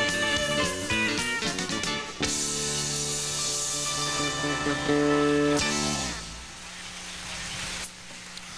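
Live rock-and-roll band with electric guitars and drums playing the closing bars of a song: quick rhythmic hits for about two seconds, then a loud held final chord that cuts off about six seconds in, leaving a much quieter background.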